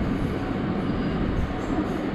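Steady rumbling background noise with no distinct events.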